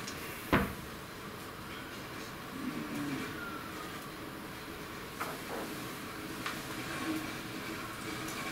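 Faint room tone with a few isolated clicks, the sharpest about half a second in: keystrokes on a laptop keyboard as a terminal command is typed.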